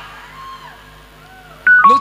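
Electronic keyboard playing a few short, steady notes that step down in pitch, coming in suddenly near the end after a quiet lull, over a sound system.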